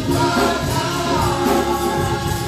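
Gospel choir singing with instrumental backing.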